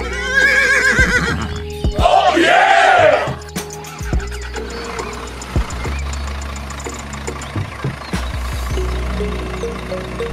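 Two recorded horse whinnies, each lasting about a second, the second starting about two seconds in, over background music.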